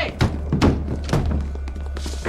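Three heavy thuds in quick succession, about half a second apart, over a low steady drone of film score.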